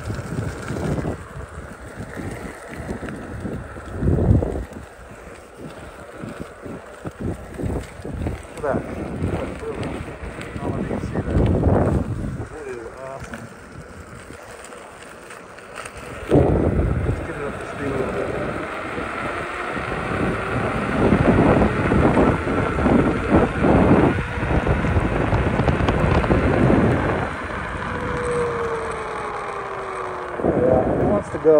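Wind buffeting the microphone in repeated gusts, heaviest in the second half, over the road noise of a Veteran Sherman S electric unicycle riding on asphalt. Near the end a faint whine falls in pitch.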